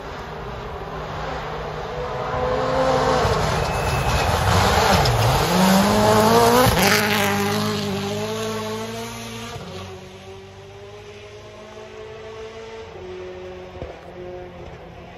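A rally car's engine approaching at full throttle on a gravel stage, climbing in pitch through the gears. Around five seconds in the pitch dips sharply and climbs again. It is loudest just before seven seconds, with a sharp crack, then fades away up the stage.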